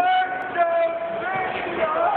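One long yell held on a single high pitch for about a second and a half, bending at its end, over arena crowd noise.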